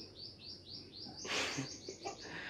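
A small bird chirping: a rapid series of short, high chirps, about five a second, each falling slightly in pitch, with a brief rustle about a second and a half in.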